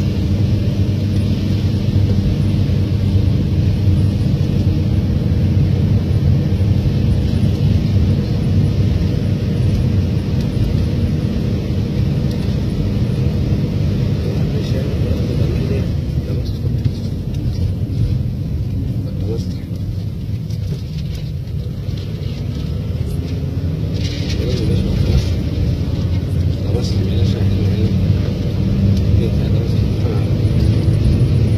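Car engine and road noise heard from inside the cabin while driving: a steady, loud low rumble that eases slightly in the middle and builds again near the end.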